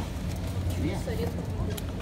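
Store background: a steady low hum with faint, distant voices, and a light click near the end.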